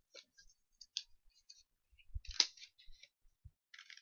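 Scissors snipping folded construction paper in short, irregular cuts, the loudest snip about two and a half seconds in.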